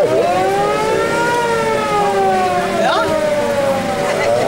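A fire engine siren: one wailing tone that climbs slowly for about a second and a half, then sinks slowly for the rest of the time.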